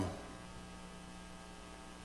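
Steady, low electrical mains hum from the church's sound system, with no other sound over it.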